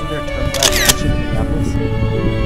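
Slow, sad background music with sustained notes. About half a second in comes a single short camera-shutter click, laid over the music as a still photo appears.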